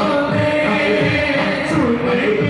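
Group of men singing devotional music together in long, held lines, over a regular low beat.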